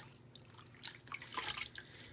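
Faint drips and small splashes of water falling from a wet washcloth into a bowl, a few scattered through the second half.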